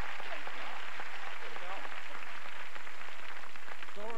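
Studio audience applause, a steady dense patter of many hands, with faint voices under it.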